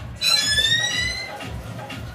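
A rose-ringed parakeet gives one loud, shrill call lasting about a second, its pitch rising slightly. Background music with a steady beat plays under it.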